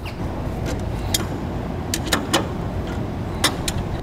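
Tongue-and-groove pliers working a trailer hub's spindle nut loose, giving sharp irregular metal clicks, about eight in all, as the jaws grip, slip and reset on the nut. A steady low rumble runs underneath.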